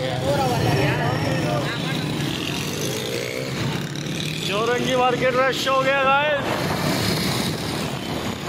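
Busy night street traffic: motorcycle and car engines running in a steady low rumble, with voices in the crowd. About halfway through, a voice calls out loudly in a long, wavering cry that lasts about two seconds.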